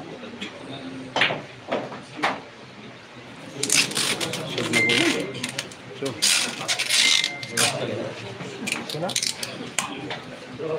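Pool balls clicking on a billiard table: the cue tip striking the cue ball and the cue ball hitting the object ball, a few sharp clicks about a second in, as the green ball is potted. Then, from about three and a half seconds, loud crowd voices and noise.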